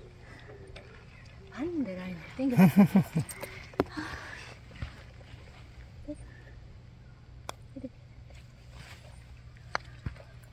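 Brief low murmured voices in the first few seconds, then faint outdoor background with a few soft clicks. The sharp click near the end is a putter tapping a golf ball on the green.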